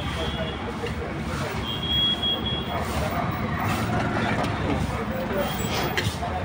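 Street traffic rumbling steadily, with people talking in the background; a thin high tone sounds for about a second, about two seconds in.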